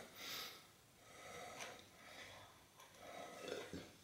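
Near silence, with a few faint, soft sounds: one shortly after the start, one in the middle and one near the end.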